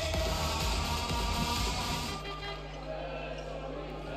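Sports-hall sound at a floorball game: loud music and crowd noise with a heavy bass after a goal, cutting off about two seconds in. After that the hall is quieter, with a steady low hum and a few faint knocks from play on the court.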